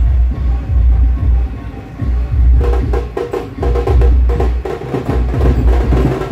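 Band-party music played very loud through a truck-mounted speaker rig, with a heavy bass beat about once a second. Busy percussion and a held note come in about two and a half seconds in.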